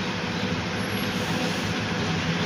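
Intercity coach bus's diesel engine running steadily as the bus pulls slowly across a dirt lot.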